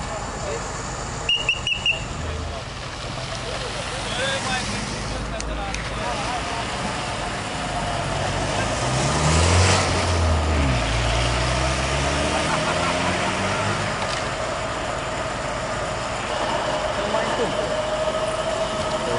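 A road vehicle drives past, its engine sound rising then falling in pitch, loudest about halfway through, over a steady background of traffic noise and voices.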